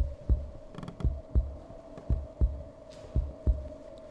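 Heartbeat sound effect: low thumps coming in pairs in a steady rhythm over a steady hum, with a short creak a little under a second in.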